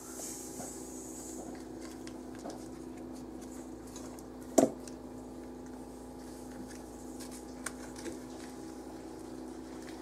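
A paper yeast packet being handled and torn open, with faint crinkles and ticks over a steady hum. About halfway through there is one short, sharp sound.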